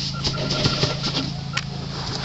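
Dry sawdust rustling and crackling as a hand spreads it across the inside of a hive quilting box, an irregular scratchy shuffle with a steady low hum behind it.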